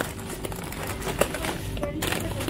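Plastic bags of sunflower seeds crinkling as they are handled, with a sharp click about a second in.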